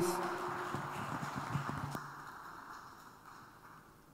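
A small seated congregation applauding, the clapping thinning out and dying away by about halfway through.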